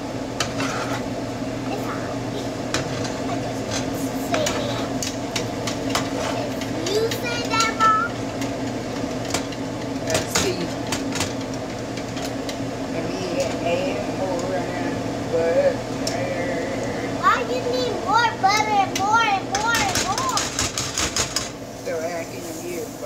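A steady mechanical hum runs under a child's high voice. Near the end comes a quick run of metal clinks from a wire whisk in a bowl.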